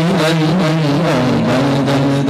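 A man singing a naat in a drawn-out, wavering melody over a steady low drone, amplified through a PA.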